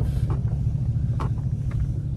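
Old pickup truck's engine running at low revs, a steady low rumble heard from inside the cab, with a few faint clicks over it.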